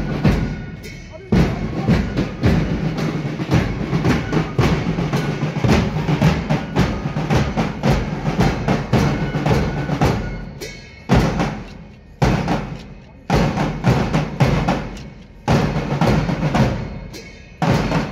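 Marching drum band of bass drum and side drums playing a march cadence. About ten seconds in, the dense drumming gives way to strong beats about once a second, each dying away before the next.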